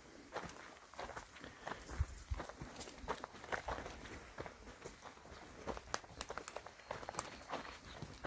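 Footsteps on a dry, sandy dirt track: two or more people walking, their steps coming as faint, irregular scuffs and crunches.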